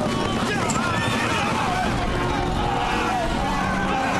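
Battle din: horses galloping and whinnying amid men's shouts and yells, a dense steady clamour.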